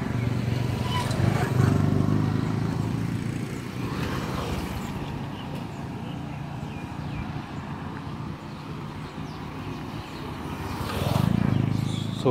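Road traffic going by, motorcycle and car engines, louder about a second or two in and again near the end.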